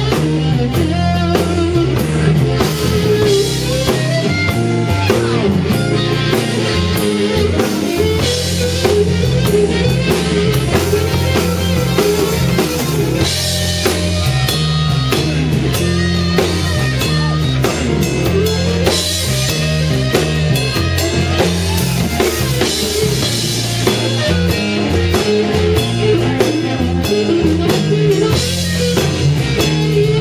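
Live electric blues band playing: an amplified harmonica solo with bending notes over electric guitar, bass and a drum kit keeping a steady beat.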